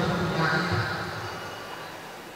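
A man speaking into a handheld microphone; his voice trails off about a second and a half in.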